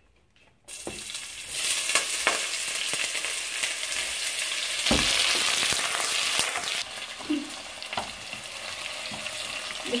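Sliced onions tipped into hot oil in a stainless steel pot and frying, a loud sizzle that starts suddenly about a second in, with a spatula scraping and clicking against the pot as they are stirred. The sizzle eases somewhat past the middle but keeps going. This is the first stage of a pilau, frying the onions.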